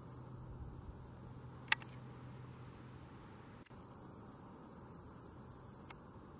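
Faint steady low hum and hiss, broken by a single sharp click a little under two seconds in.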